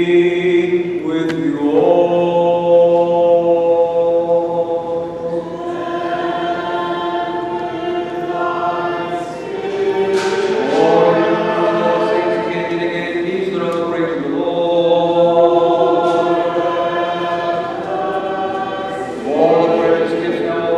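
Liturgical chant sung during a Byzantine-rite Divine Liturgy: long held notes, with new phrases sliding up in pitch about two seconds in, about halfway through, and again near the end.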